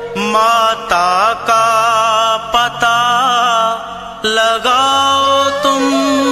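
Hindi devotional bhajan to Hanuman: a voice sings long, wavering melodic phrases over a steady instrumental accompaniment with a held low note.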